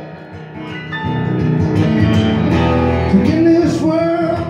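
Acoustic guitar strummed between sung lines of a live song, quieter at first and building. A man's singing voice comes back in near the end.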